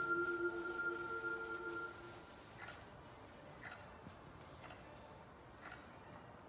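Projection-show soundtrack: a sustained chord of held tones fades out about two seconds in, followed by a clock ticking about once a second, four ticks in all.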